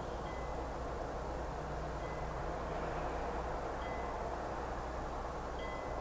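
Steady background noise with a low hum, and a faint, short, high-pitched tone that repeats four times at even spacing, about every two seconds.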